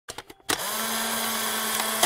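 Intro sound effect for an animated title card: a few quick clicks, then a sharp hit about half a second in followed by a steady, drill-like buzzing noise with a low tone underneath that runs past the end.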